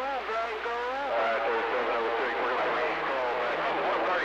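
A man's voice received over a CB radio, narrow and garbled, coming through the speaker over steady static hiss. The voice is clearest in the first second, then mostly static with faint traces of speech.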